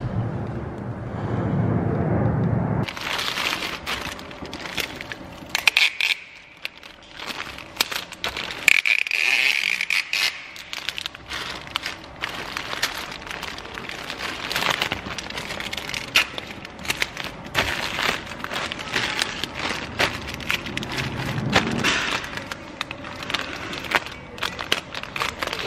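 Plastic mailer bags crinkling and rustling as packages are handled on a counter, with many sharp, irregular crackles and clicks. A low rumble fills the first three seconds before the crinkling starts, and a brief high squeal comes about nine seconds in.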